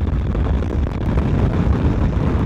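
Steady low rumble of a motorcycle underway, with wind buffeting the on-board microphone mixed with engine and road noise.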